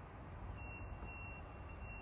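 A high-pitched electronic beep that starts about half a second in and repeats about twice a second, over a low steady rumble of street noise.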